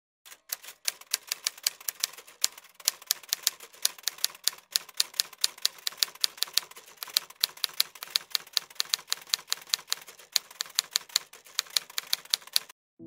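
Typewriter keystroke sound effect: rapid, uneven clicks, several a second, keeping time with on-screen text being typed out letter by letter.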